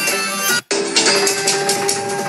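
Live folk music driven by large double-headed drums struck with sticks, with a sustained pitched melodic line over the beat. The sound cuts out for a split second about two-thirds of a second in.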